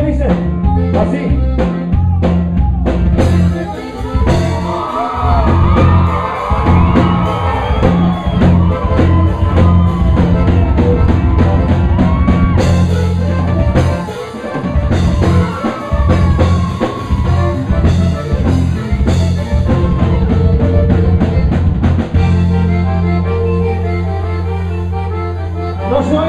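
Live Tejano band playing: button accordion carrying the melody over a drum kit and a steady bass line, loud and continuous.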